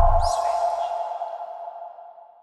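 Tail of a TV channel's logo sting: a held electronic tone and a low boom fading away, with a brief high swish just after the start; the tone dies out near the end.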